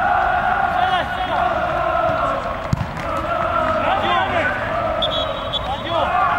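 Men's voices shouting and calling out across a football pitch during play, with a short high steady tone about five seconds in.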